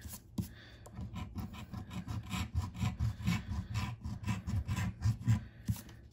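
A coin scratching the coating off a paper scratch-off lottery ticket in quick, repeated back-and-forth strokes.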